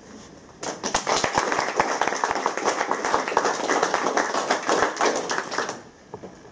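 Audience applauding. It starts about half a second in and dies away just before the end.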